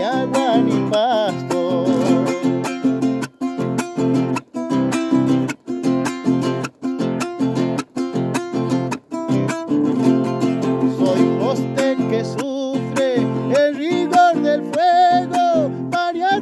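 Nylon-string acoustic guitar strummed in a steady rhythm, with short sharp stops between strokes about once a second in the middle stretch. A man's singing voice is heard over it at the start and again near the end.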